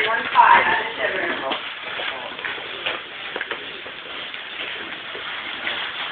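Indistinct voices of people talking, loudest in the first second or so, over a steady background din of a crowd.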